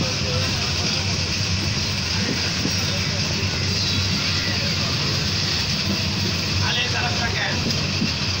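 Kurigram Express passenger train running at speed, heard from aboard: a steady rushing running noise with a low hum underneath.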